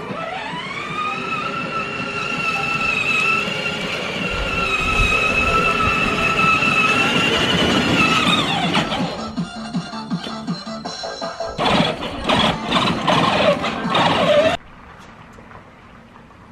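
Electric motor of a children's battery-powered ride-on toy car whining: it spins up quickly, runs at a steady pitch for several seconds, then winds down. Later come a few seconds of irregular knocks and rattles that cut off abruptly, with background music underneath.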